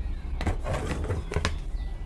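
Handling noise from a handheld phone camera being steadied and focused: a soft knock about half a second in and another about a second and a half in, with a brief rustle between.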